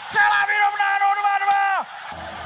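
A sports commentator's long shouted goal call, one word held on a single pitch for nearly two seconds before it drops away.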